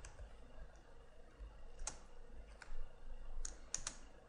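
A few faint, sharp computer keyboard keystrokes, spaced irregularly through the second half, as a couple of keys are typed.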